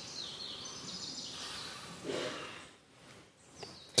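Faint background noise with a few short, high bird chirps falling in pitch, near the start and again near the end.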